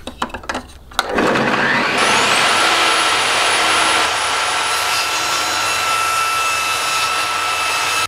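Clicks at a table saw's switch, then the saw starting about a second in: its motor winds up with a rising whine and then runs loud and steady at full speed while 9mm plywood is fed through to be ripped into strips.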